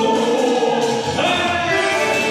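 Live party music with a singer on a microphone over the band; the sung line slides up in pitch about a second in.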